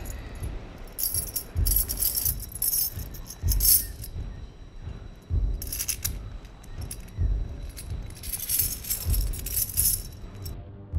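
A metal link chain jingling as it is handled, its links clinking in several irregular bursts, over background music with soft low beats.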